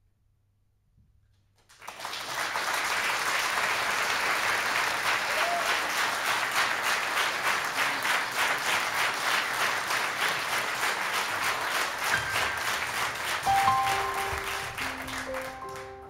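Audience applause, starting about two seconds in after a silence and running steadily, then thinning as a few sustained piano notes begin near the end.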